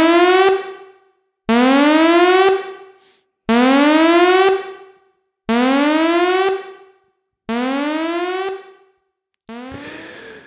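Electronic alarm sound effect signalling the start of a spoiler section: five rising alarm tones, each about a second long and two seconds apart, the last two quieter.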